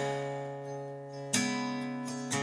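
Acoustic guitar accompaniment with no singing: a chord rings and fades, then another chord is strummed about a second and a half in and rings on.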